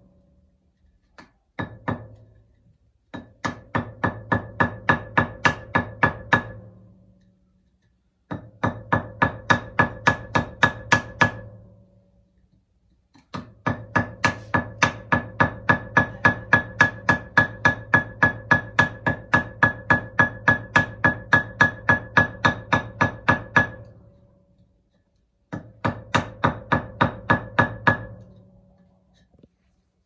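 Hammer striking a steel chisel held against a red clay brick to score and split it: rapid runs of ringing metal blows, about four or five a second, in several bursts with short pauses between them, the longest lasting about ten seconds.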